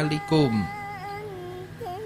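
A man's voice finishes a phrase in the first half second. After it a single long note of soft background music is held, wavering slightly and dipping briefly near the end.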